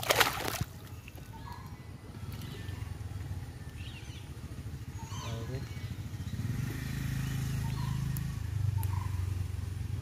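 A tilapia thrashing in shallow river water in a man's hands, one sharp splash right at the start, then quieter water drips and sloshes. A low steady hum runs underneath and grows louder in the second half.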